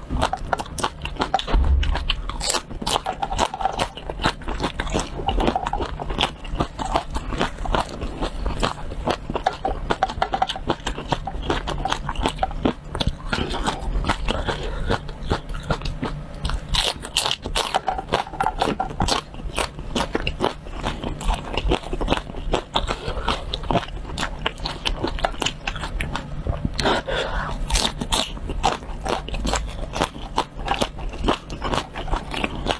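Raw red chili peppers, dipped in a thick paste, being bitten and chewed close to a clip-on microphone: a dense, continuous run of crisp crunches and wet chewing clicks.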